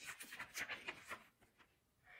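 Faint rustling of a paper picture-booklet page being turned, a few soft rustles in about the first second.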